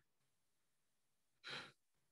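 Near silence, with one faint breath about one and a half seconds in.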